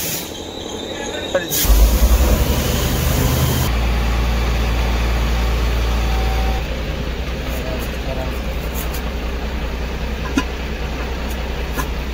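A steady, loud low rumble like a running machine, swelling about two seconds in and easing a little past the middle, with a few light metallic clicks in the second half.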